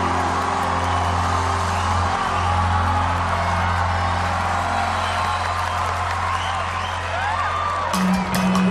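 A live band holds a steady low chord while an arena crowd cheers and applauds.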